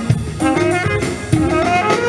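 Live jazz band: a flugelhorn plays a melodic line of held notes over drum kit and bass.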